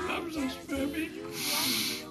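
A person's wordless, wavering voice, then a sharp hiss starting a little over a second in and lasting about half a second.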